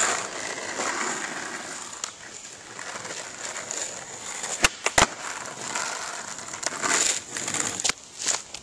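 Skateboard wheels rolling on asphalt, with two sharp cracks about halfway through, about a third of a second apart: the tail popping for a pop shove-it and the board landing. It rolls on afterwards and gets louder near the end as it comes close.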